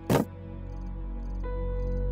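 A short, sharp burst of noise right at the start, then the drama's background music: sustained tones with a new note coming in partway through, slowly growing louder.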